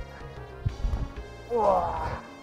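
Background rock music, with the dull thud of a bare shin kick landing on the opponent's shin about two-thirds of a second in and a smaller knock just after. Near the end comes a short, loud vocal cry.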